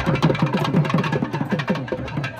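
An ensemble of thavil barrel drums played together in a fast, dense rhythm, each low stroke dropping in pitch, with sharp high strokes cracking over them.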